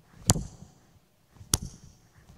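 Two sharp hand smacks about a second apart, acting out a boxer's punches.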